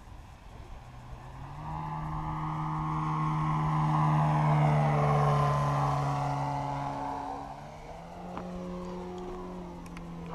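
3D Hobby Shop 95-inch Extra 330 RC aerobatic plane flying a pass: the drone of its motor and propeller grows louder toward the middle, peaks and fades, its pitch stepping up and down with throttle changes.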